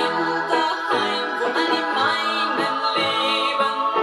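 Music with singing played from a vinyl record on a Fisher Studio Standard MT-6221 turntable, read by an Audio-Technica M35V cartridge.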